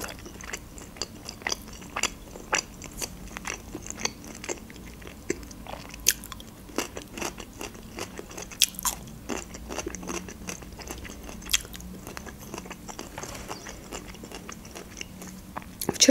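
Close-miked chewing and biting of a crisp fresh cucumber: irregular small crunches and wet mouth clicks.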